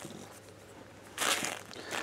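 Plastic-bagged comic books being flipped through in a cardboard long box: a quiet stretch, then a brief rustle of the plastic sleeves rubbing together a little over a second in.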